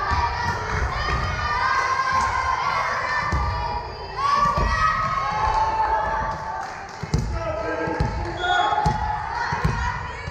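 Girls' voices shouting and chanting in a large gym, with several thuds of a volleyball bouncing on the hardwood floor in the second half.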